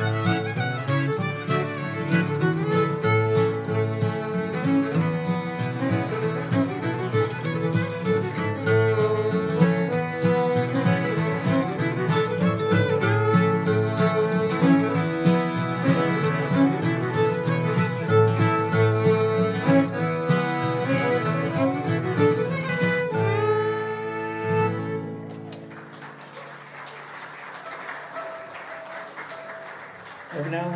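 Old-time fiddle tune played on fiddle with accordion accompaniment, the fiddle a little shrill on its treble strings. The tune ends about 25 seconds in, and a quieter, noisier stretch follows.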